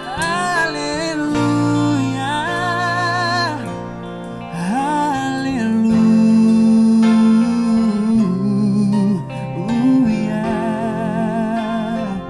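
A male singer performing live, holding long notes with a wide vibrato, backed by a band with guitar and bass.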